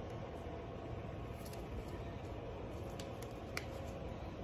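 Steady low background hum, with a few faint clicks about halfway through and near the end.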